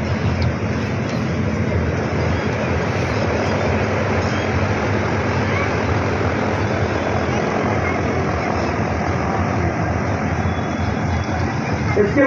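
A steady, even rushing noise that holds at one level throughout, with no voice over it.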